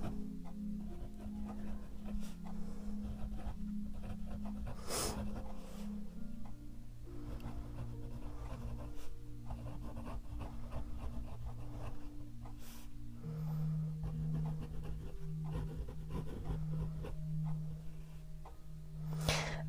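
Fine nib of a Waterman Kultur fountain pen scratching lightly over paper as a line of words is written, under soft background music of long held low notes that change about a third and two thirds of the way through.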